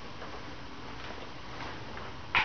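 Faint light clicks and rustles over a steady background hiss and hum: handling noise as the player moves with a nylon-string classical guitar and gets up from his chair after playing.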